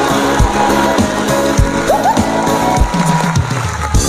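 Instrumental band music with a steady drum beat under sustained keyboard and bass notes, the drums played on an electronic drum kit. A short sliding note comes about halfway through.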